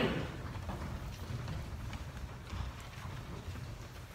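Quiet church room tone with a steady low rumble, faint scattered footsteps and knocks from people moving about the wooden pews. A brief louder sound fades right at the start.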